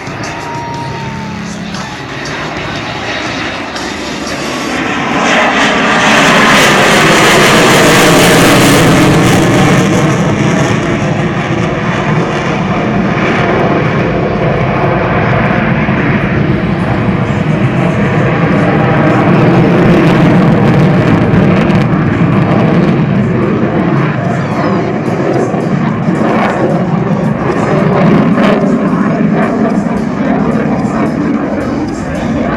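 F-16 fighter jet's engine, a loud jet roar that builds from about four seconds in to its loudest around six to ten seconds as the jet passes, then stays loud as it flies on and climbs away.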